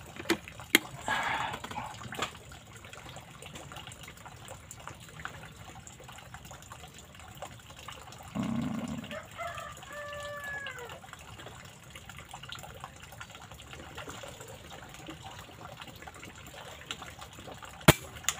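A single sharp shot from a PCP air rifle firing a 13.43-grain slug near the end, the loudest sound. Before it, a few short clicks in the first couple of seconds over a faint steady background.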